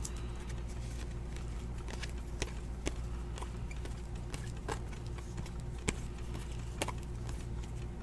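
Faint, irregular clicks of glossy Optic basketball trading cards being flipped through by hand, over a steady low hum.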